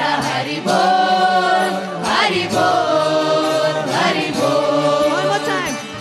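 Devotional Hindu kirtan: singing voices chanting a melodic bhajan, with gliding sung phrases over a steady drone.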